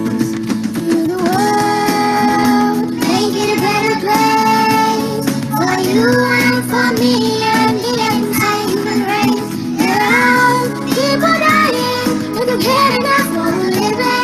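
Children singing a song with a woman's voice, over acoustic guitar accompaniment.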